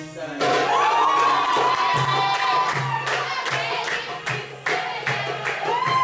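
Live Middle Eastern folk music with a hand drum keeping a steady beat, while a group of voices cries out long, high, held shouts: one begins about half a second in, and another rises near the end.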